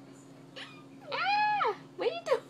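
A toddler's high-pitched squeal: a short yelp about half a second in, then a longer held note that rises, holds steady and falls away.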